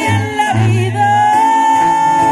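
Regional Mexican band music: a woman's voice rises into a long, held high note over strummed acoustic guitars, with a tuba playing low bass notes in the first second.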